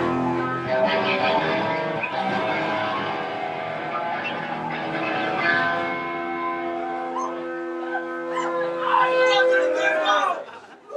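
Amplified electric guitars holding sustained, ringing chords, the pitch shifting a couple of times, with little drumming.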